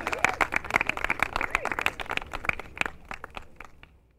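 Applause and clapping, a dense patter of irregular claps that fades out steadily and is gone by the end.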